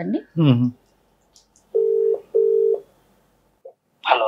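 Telephone ringback tone: one double ring, two short steady beeps close together, the ringing heard by the caller while an outgoing call waits to be answered.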